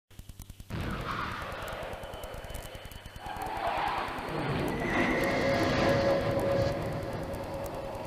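A car under hard braking: noise that builds to a loud stretch of sustained tyre squeal, then eases off.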